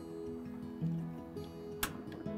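Background acoustic guitar music, with a single sharp click near the end from the grill's push-button piezo igniter being pressed to light the propane burner.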